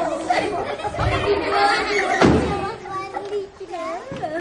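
Several voices talking at once, chatter echoing in a large hall.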